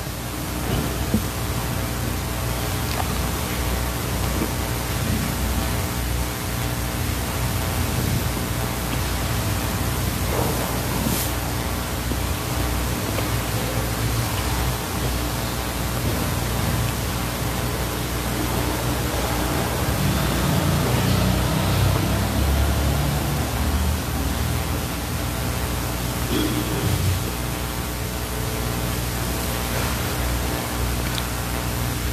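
A steady, even hiss with a faint low hum under it, holding at one level throughout.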